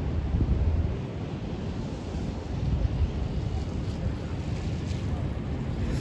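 Wind buffeting the microphone: a low, uneven rumble that swells and dips in gusts.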